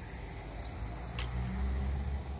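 A motor vehicle's engine rumbling nearby, louder in the second half, with a brief click about a second in.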